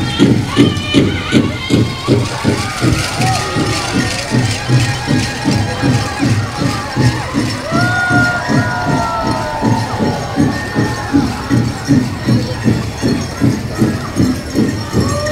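Native American drum-and-song group: a big drum beaten in a steady, even beat, about three strokes a second, with high, wavering singing voices over it.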